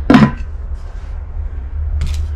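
The glazed ceramic lid of a stoneware casserole pot knocks once against the pot, a short clink just after the start. A low steady hum runs underneath.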